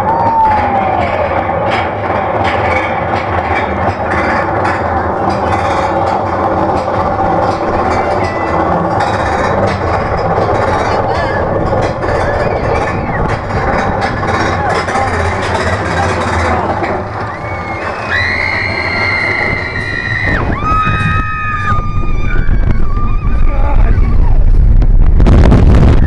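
Magnum XL200 roller coaster train running on its track with a steady rattle and clatter. Near the end, loud wind buffets the microphone.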